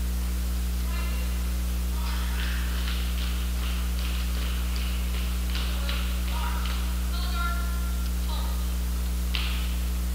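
Steady low electrical hum, with faint distant voices coming and going over it.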